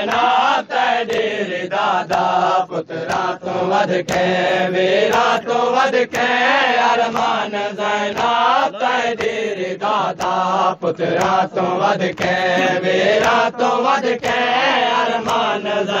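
Voices chanting a Saraiki noha lament, with rhythmic matam chest-beating striking about once a second under the chant.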